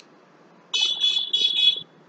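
A high-pitched electronic beeper sounding four quick beeps in about a second.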